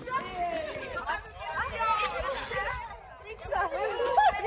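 Several people chatting and calling out at once, an outdoor group babble with no single clear speaker.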